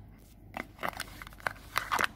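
Light handling noises: a few faint, separate clicks and taps, the last couple near the end a little louder, as hands move small objects about on a hard surface.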